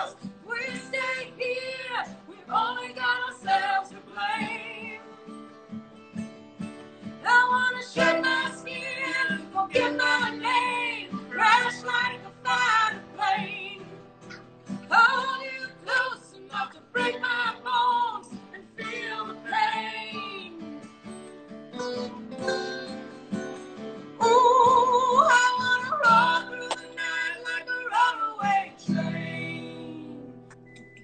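A man and a woman singing a folk song together to strummed acoustic guitar, with a loud, wavering held note about three quarters of the way through.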